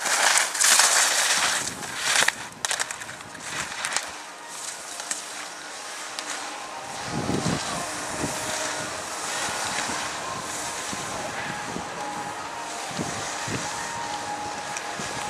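Slalom skis scraping and skidding on hard-packed snow as a racer carves through the gates, loudest and harshest in the first two seconds or so, then fading to a quieter hiss. A few low thumps come in the second half.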